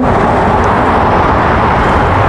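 A car driving past close by at speed, a steady rush of tyre and road noise.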